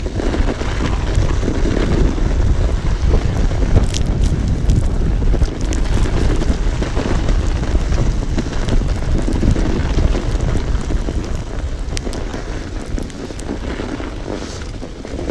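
Wind buffeting a chest-mounted action camera's microphone during a fast mountain-bike descent on a snowy road, over the rush of the tyres, with a few sharp clicks from the bike, the loudest about four seconds in.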